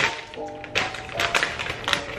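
Soft background music with steady held notes, over which a plastic bag of dried chilies is handled and pulled open, giving a few brief crinkles and taps.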